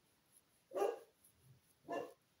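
A dog giving two short barks about a second apart, the first one louder.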